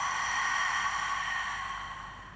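A woman's long, audible breath out through the mouth, a steady breathy hiss that fades away toward the end. It is the exhale phase of a Pilates lateral ribcage breathing exercise.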